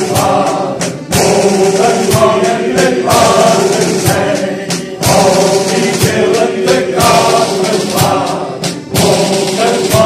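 Men's fishermen's choir singing together, accompanied by a drum kit: sticks strike the drums and cymbals in a steady beat under the voices. The singing goes in phrases of about four seconds, with a short dip between them.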